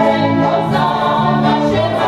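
Folk song sung by a group of voices in held notes, as dance music, at a steady loud level.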